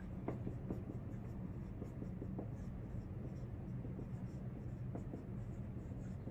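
Dry-erase marker writing on a whiteboard: faint, irregular short scratches and taps as the letters are stroked out, over a steady low hum.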